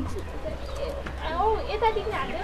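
Women's voices talking and exclaiming in short phrases, over a faint low hum.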